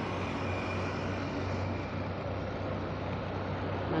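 Steady road traffic noise on a busy highway: vehicles running past, with a low, steady engine hum underneath.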